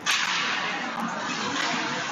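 Ice hockey play resuming from a faceoff: a sudden steady hiss of skates scraping the ice, with a few light stick clacks.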